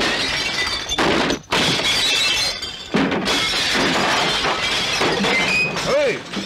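Repeated crashing and glass shattering as a table of bottles and glasses is smashed over, with music underneath. Fresh crashes come about a second in, again shortly after, and around three seconds in.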